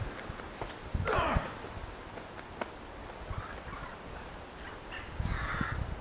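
A bird's harsh call about a second in, followed by two fainter calls later, over low wind rumble.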